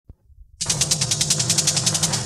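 Opening of a jhankar-style Bollywood track: a fast electronic drum roll of about twelve hits a second over a low held tone, starting about half a second in.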